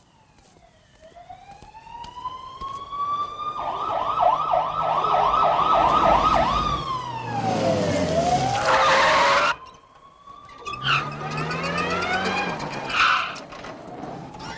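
An emergency-vehicle siren: a rising wail that switches to a fast yelping warble for about three seconds, sweeps down, and ends in a harsh burst of noise that cuts off suddenly about two-thirds through. The siren then starts rising again, with short sharp noises over it.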